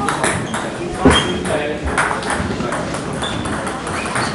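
Table tennis ball clicking off the bats and table in a rally, over background chatter of voices.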